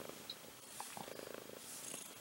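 A domestic cat purring faintly, heard as a short stretch of rapid, even pulsing about a second in.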